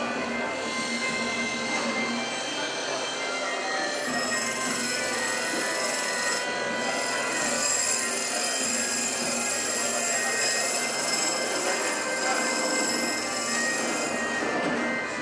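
Wood lathe running with a disc-shaped wooden blank spinning on it while it is sanded by hand: a steady hiss of abrasive on the turning wood with a continuous high whine.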